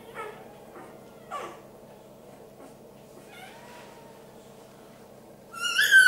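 Newborn puppy crying: a few faint squeaks, then a loud, high-pitched squeal near the end.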